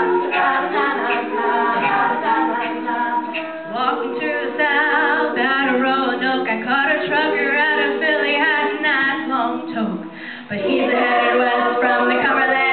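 Women's a cappella group singing in close harmony with no instruments, with a brief drop in level near the end.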